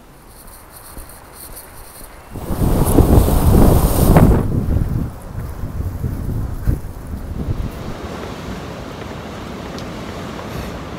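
Strong wind buffeting the microphone: a loud, gusty low rumble starts about two and a half seconds in and lasts a couple of seconds, then eases to a steadier rush of wind.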